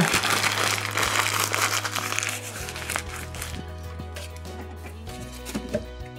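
Plastic bag crinkling as shrimp shells are shaken out of it into a stockpot, busiest for the first few seconds and then thinning out, over a soft background music bed.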